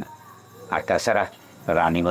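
Crickets chirping steadily as a background bed, under a man talking in two short stretches, in the middle and near the end.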